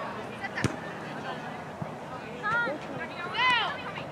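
Distant shouted calls from players and spectators across a soccer field, two short high calls near the middle and toward the end, over a low murmur of voices. A single sharp knock comes less than a second in.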